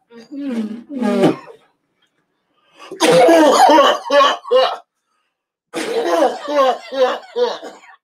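A man coughing hard in three fits, the loudest about three seconds in.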